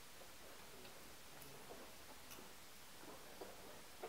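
A few faint, sharp clicks over quiet room tone: chess pieces being set down on a wooden board and a chess clock being pressed during a blitz game.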